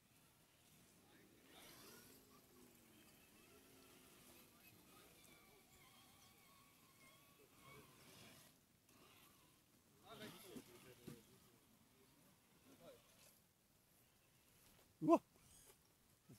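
Faint, distant voices of people talking, over quiet outdoor background. A man's short spoken hesitation comes near the end.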